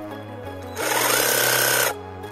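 Cordless reciprocating saw running with its blade in a branch for about a second, then cutting off suddenly, over background music.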